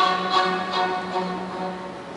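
Live symphony orchestra playing, with short accented notes roughly every half second over a held low note, getting quieter toward the end.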